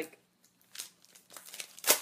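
Product packaging being handled and opened by hand: a series of crinkles and rustles that start under a second in, with the loudest crinkle near the end.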